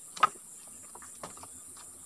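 A steady, high insect chorus buzzes throughout. Over it comes one sharp knock of dry wood about a quarter second in, then a few lighter clicks as sticks of firewood are handled and laid down.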